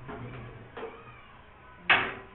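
A single sharp clang of something hard being knocked, near the end, after a stretch of low room noise.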